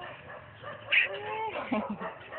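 A baby vocalizing: gliding coos and babble that rise and fall in pitch, with a short high squeal about a second in.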